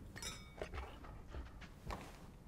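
Glass clinking against glass at a drinks table: one bright clink that rings briefly about a quarter second in, then a few faint light knocks.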